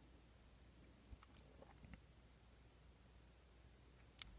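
Near silence: room tone, with a few faint clicks a little over a second in.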